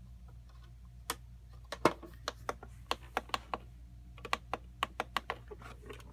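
Irregular sharp plastic clicks and taps, about twenty over several seconds, from a battery toy being handled and its switch worked, over a low steady hum. No sound comes from the toy itself: it isn't working.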